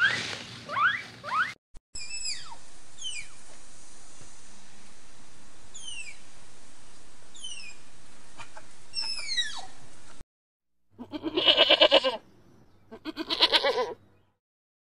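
A string of animal calls: guinea pig squeaks rising in pitch in the first second or so, then several short, high whistles that fall in pitch, then two loud, wavering bleats near the end.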